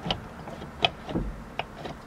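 Steeda Tri-Ax short-throw shifter in a 1996 Mustang GT clicking as the lever is rowed through the gears: about five sharp clicks as it snaps into the gates. The newly installed shifter is way notchier, with a spring that returns the lever.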